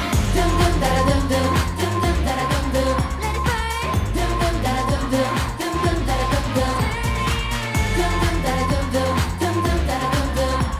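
K-pop dance track with female group vocals over heavy bass and a steady beat, with a sung vocal run rising high about three and a half seconds in.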